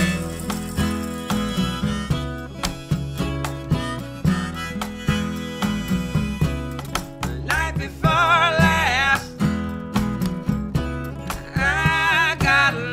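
Acoustic blues band playing an instrumental passage: a harmonica leads over plucked upright bass and strummed acoustic guitar. About eight seconds in, a high, wavering held line stands out for a second or so.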